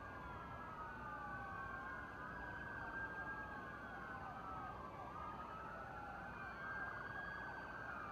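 Several police patrol SUVs' sirens wailing at once, faint, their rising and falling tones overlapping out of step.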